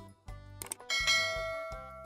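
Notification-bell sound effect: a short click, then a bright bell ding about a second in that rings on and slowly fades, over light background music with a steady beat.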